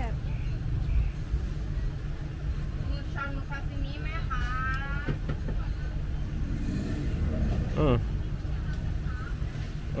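A low, steady outdoor rumble with no clear source, likely traffic. About four seconds in, a brief wavering high-pitched call sounds over it.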